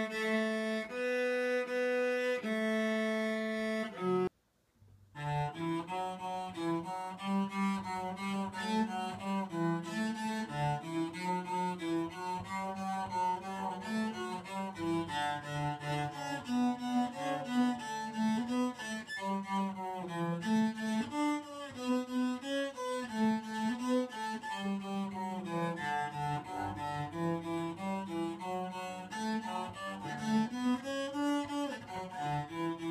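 Cello played with a bow by a first-year learner: a few long held notes, a brief break at a cut about four seconds in, then a quicker melody of short bowed notes.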